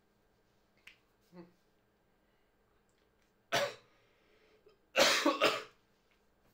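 A man coughing: one sharp cough about three and a half seconds in, then a double cough near the end, preceded by a faint click and a small throat sound.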